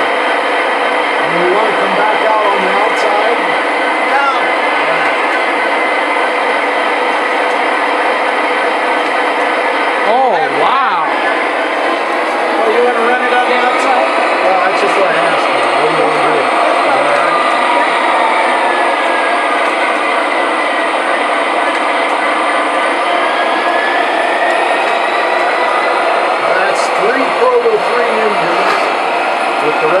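Several model diesel locomotives running together on a layout, making a steady mechanical running drone with humming tones, and people's voices murmuring over it.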